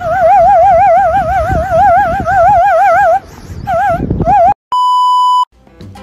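A small handheld whistle blown in a fast, even warble, held for about three seconds, then two short warbled blasts. Near the end, a steady electronic beep lasting under a second.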